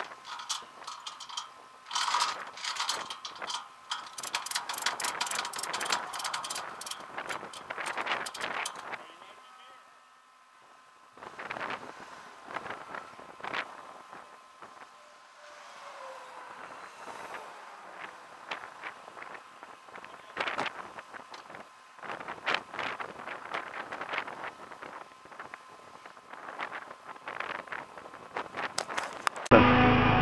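Wind buffeting a camera microphone on the flatbed of a tow truck at highway speed, with road noise, coming and going in rough gusts with brief quiet gaps.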